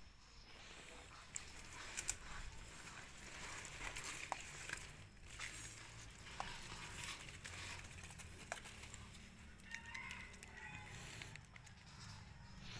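Faint rustling and snapping of kèo nèo (yellow velvetleaf) stems and leaves as they are picked by hand from a pond, with scattered short clicks. A few faint bird chirps near the end.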